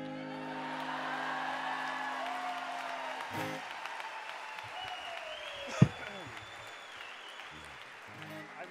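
An audience applauding and cheering, with whoops and a long whistle, over the last strummed acoustic guitar chord, which rings on for about three seconds and then dies away. A single sharp thump a little before six seconds in is the loudest moment.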